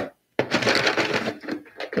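A sharp click, a brief cut-out, then dense crackling and rustling, like tying materials being rummaged through by hand.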